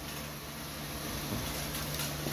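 Steady low electrical hum with a faint hiss, from a switched-on automatic battery charger clipped to a lead-acid battery.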